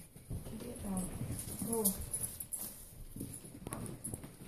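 A miniature pinscher and a ferret in a tug of war over a toy on carpet: scuffling with small irregular knocks and clicks, and two short voiced sounds about one and two seconds in.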